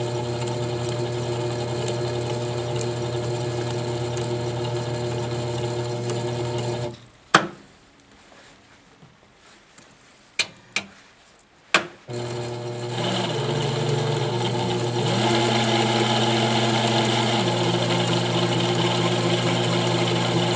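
920B toroid winding machine running steadily as it winds wire onto a toroid core. It stops about seven seconds in, a few sharp clicks follow, and it starts up again after about five seconds.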